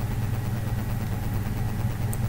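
Steady low hum with an even hiss over it, the background noise of the recording between spoken phrases.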